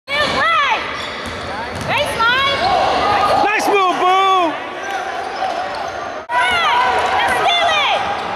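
Basketball game play on a hardwood gym court: the ball dribbling and sneakers squeaking sharply, over echoing gym noise with players' voices. The sound breaks off briefly a little after six seconds, then goes on.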